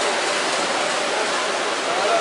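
Steady wash of noise in a reverberant indoor pool hall: swimmers splashing, mixed with faint distant voices.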